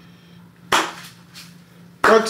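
A single sharp knock of a phone being set down on a hard counter about two-thirds of a second in, then a fainter tap, over a steady low hum.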